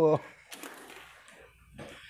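The end of a man's loud exclamation, "Oh!", falling in pitch, then low room sound with a faint short click about half a second in.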